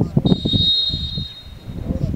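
A referee's whistle blown in one long, steady blast lasting a bit over a second and a half, signalling the free kick to be taken, over the chatter of voices.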